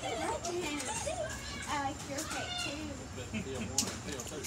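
Children's voices chattering and calling out, rising and falling in pitch, with a single sharp click near the end.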